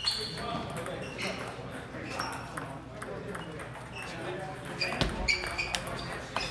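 Table tennis balls clicking off paddles and tables from several tables at once, irregular short pings over indistinct chatter, with a heavier thump about five seconds in.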